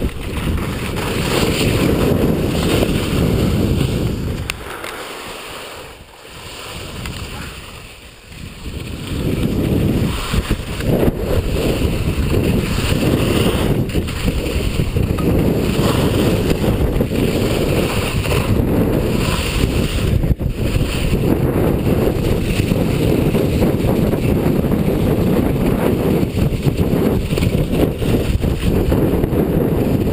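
Wind rushing over the microphone of a ski camera during a fast downhill ski run, a loud, steady rumble. It dies down for a few seconds about five seconds in, then picks up again.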